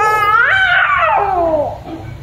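A seven-month-old baby's angry, frustrated cry: one long wail that rises in pitch, then slides down and cuts off after about a second and a half.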